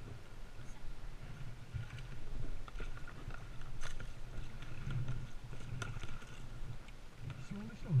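Plastic kayak being paddled on calm water: the paddle dips and water laps and washes against the hull, with a few light knocks.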